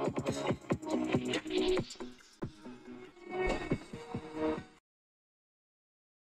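Music playing from a phone's speaker held close to a microphone and heard through NoiseTorch noise suppression, with sharp beats under it. A little under five seconds in it cuts off abruptly into dead digital silence: the suppression filter gating it out.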